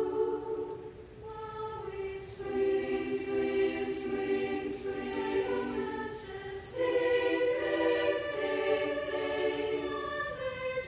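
Soprano-alto choir singing sustained chords in close harmony. The voices thin out about a second in, come back in soon after, and swell fuller again near the end.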